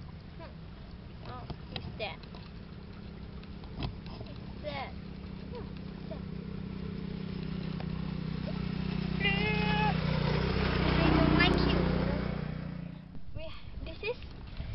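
A passing motor vehicle's engine: a low drone that builds slowly, is loudest near the end, then fades away.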